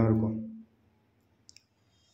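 A man's voice finishing a short phrase, then near silence with a single brief faint click about one and a half seconds in.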